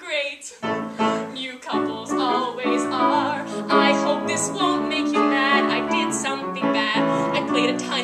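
A woman singing a held, wavering line over live piano accompaniment playing sustained chords.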